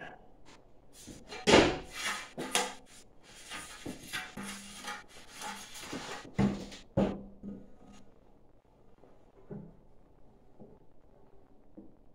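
Large thin metal stock-pot lids being handled and fitted together: irregular clanks, scrapes and rattles, loudest a little after the start, with two sharp knocks about halfway through and a few fainter knocks after.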